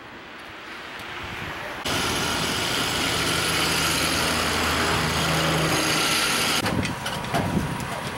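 Roadside traffic noise, with a heavy vehicle's engine running steadily in the middle of the stretch. Near the end come a few short knocks.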